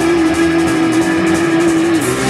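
Live punk rock band playing, electric guitars and drums, with one long note held at a steady pitch over the crashing cymbals.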